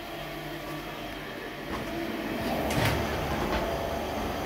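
Union XL8015E dry-cleaning machine running in manual mode: a steady mechanical hum that grows louder about two and a half seconds in, with a brief knock near three seconds in.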